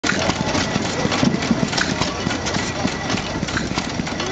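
Stover single-cylinder hit-and-miss gas engine running very slowly, a string of clicks and knocks from the engine as the flywheels turn.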